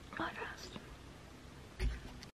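Soft whispered speech trailing off into quiet room tone, with a short low bump near the end.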